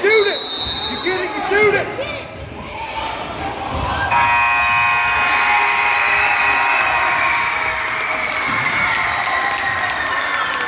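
Gym at the end of a youth basketball game: a short high whistle at the start, then the ball bouncing with players on the court. About four seconds in, the scoreboard horn sounds for several seconds to end the game, over a crowd cheering.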